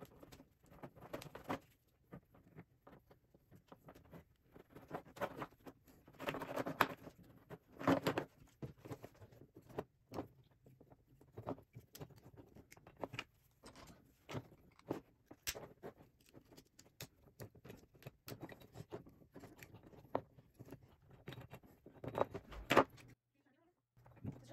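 Hands taking apart a flexible metal conduit electrical whip: irregular small clicks, scrapes and rustles as a metal end fitting is worked loose and the insulated copper wires are pulled through, with a few louder rattles.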